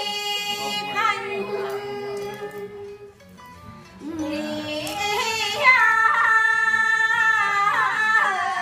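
Unaccompanied quan họ folk singing by women: long held notes with ornamented turns in the melody. The singing drops into a brief lull about three seconds in, then comes back and grows louder over the last few seconds.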